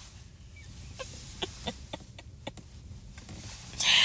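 A woman's stifled laughter behind her hand: a string of short clicking catches in the throat, then a loud breath out near the end, over a steady low rumble in the car's cabin.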